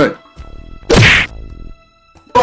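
A cartoon body-slam sound effect: a single loud whack about a second in, over faint background music.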